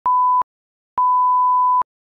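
A 1 kHz test-tone beep of the kind that goes with TV colour bars: a short beep, a pause of about half a second, then a longer beep of nearly a second.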